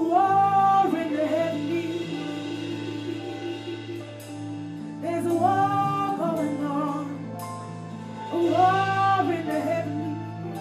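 A solo voice singing slow, held phrases of a spontaneous worship song into a microphone, over sustained keyboard chords. The phrases come three times: at the start, about five seconds in, and again about eight and a half seconds in.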